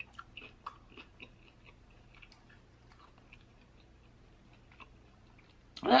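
Close-miked chewing of fried chicken: faint, scattered short clicks that thin out after about three seconds.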